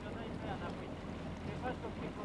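Boat engine running with a steady low hum under indistinct voices.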